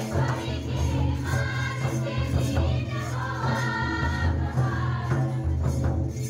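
A Christian folk dance song: a group of voices singing over music with a heavy, continuous low bass.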